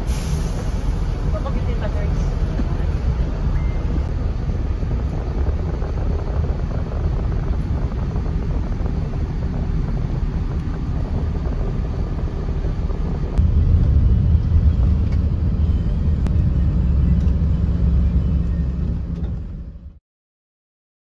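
Steady low rumble inside a coach bus standing with its engine idling. The rumble grows louder about two-thirds of the way through, then fades out at the end.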